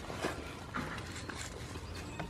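Goats' hooves tapping and shuffling on a wooden board, a few irregular knocks with rustling in between.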